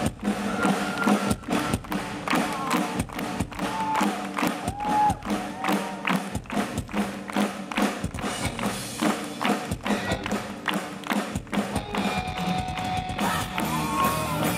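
Live rock band playing amplified through a festival PA: a steady drum-kit beat with electric guitars over a held low note. No vocals yet; this is the instrumental opening of the song.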